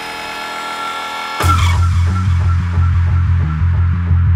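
Background music: a held chord, then about a second and a half in a sudden hit that starts a deep, pulsing bass beat.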